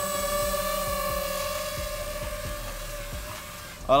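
Quadcopter drone's propellers whining in flight: a steady multi-tone whine that fades gradually as the drone flies away.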